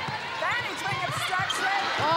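Players' court shoes squeaking on a hardwood netball court during play: several short, sharp squeaks about half a second in, then more near the end, over a background of voices.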